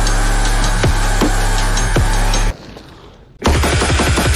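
Loud music with a heavy bass and a steady drum beat. It drops almost to silence about two and a half seconds in, then comes back hard a second later with a quick run of drum hits.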